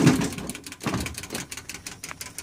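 A run of irregular, sharp light clicks and knocks, like hard parts being handled or rattling.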